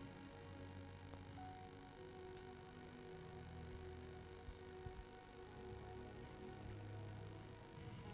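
Faint music of held keyboard tones, soft and steady, close to silence, with two small ticks near the middle.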